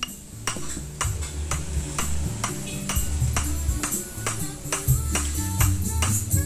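Background music with a steady beat, about two strokes a second over a bass line.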